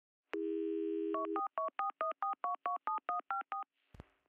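Telephone dial tone, then about a dozen touch-tone dialing beeps in quick succession, each a pair of notes, ending with a short click.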